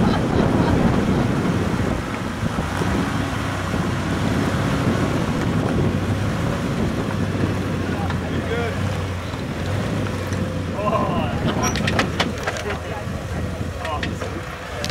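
Lifted Jeep Wrangler TJ's engine running at low revs as it crawls up a steep rock slab, under heavy wind noise on the microphone. A laugh at the start and brief voices near the end.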